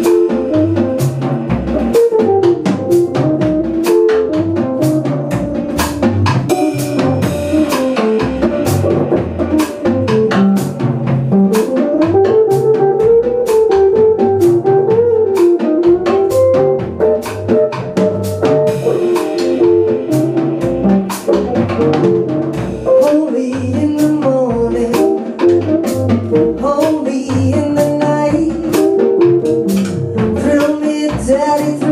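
Live rhythm and blues band playing: a drum kit keeps a steady beat of about two hits a second under upright double bass and electric guitar.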